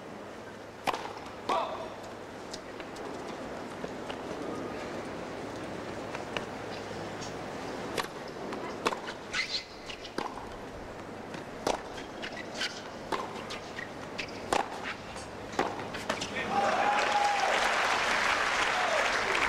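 Tennis rally on a hard court: sharp pops of racket strikes and ball bounces, irregular and about a second apart, over a low crowd murmur. About sixteen and a half seconds in, the point ends and the crowd breaks into applause.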